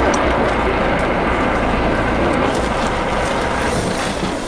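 Helicopter flying overhead: a steady, loud rumble of rotor and engine.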